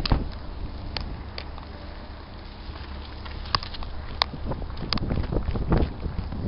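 Wind buffeting the microphone of a handheld camera, a steady low rumble, with scattered clicks and knocks of the camera being handled as it swings about.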